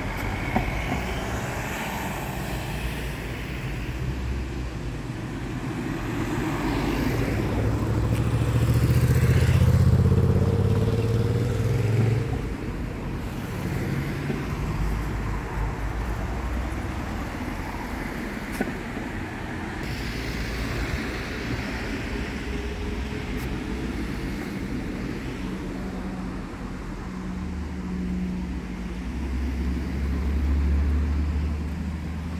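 Road traffic: cars driving past on the street, one passing loudest about a third of the way in, over a steady background of town noise.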